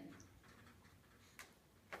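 Near silence: room tone, with two faint clicks about half a second apart in the second half.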